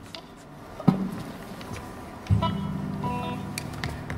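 A knock about a second in, then an electric guitar chord strummed a little past halfway that rings on loudly.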